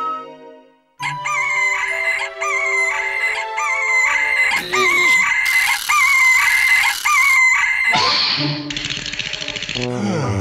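A cartoon rooster crowing in a string of short, wavering calls over light background music. Near the end it gives way to a louder, harsh, rasping cry.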